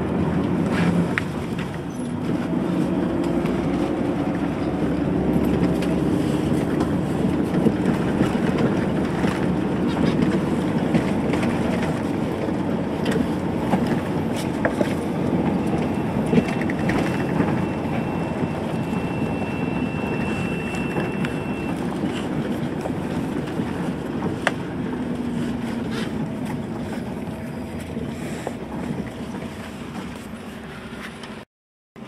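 Engine and road noise heard from inside a moving vehicle, a steady rumble with small rattles and clicks throughout. A thin high whine sounds for several seconds midway.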